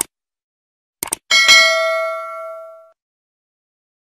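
Subscribe-button animation sound effect: a mouse click, then a quick double click about a second in, followed by a bright bell ding that rings out and fades over about a second and a half.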